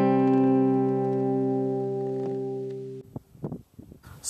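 Intro music: a strummed acoustic guitar chord left ringing, slowly fading and cut off about three seconds in, followed by faint background noise.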